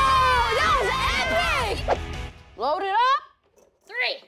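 Children yelling and cheering in excitement: a long drawn-out shout over background music, which stops about two seconds in, followed by short excited shouts.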